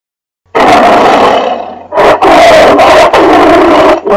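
Loud big-cat roar sound effect in two roars: the first starts about half a second in and trails off, the second starts at about two seconds and runs on.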